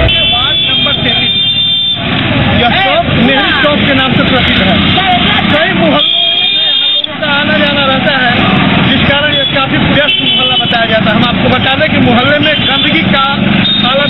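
Mostly speech: voices talking over steady street and traffic noise.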